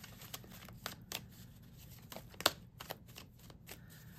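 A tarot deck being shuffled by hand: a faint run of irregular card snaps and clicks, with one sharper snap about two and a half seconds in.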